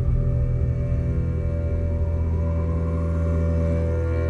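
Slow ambient background music of long held tones over a low, steady drone.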